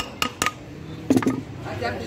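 Quick light metallic taps, about five a second, on the metal end cover of an electric water-pump motor as it is knocked into seat on the housing during reassembly. The tapping stops about half a second in.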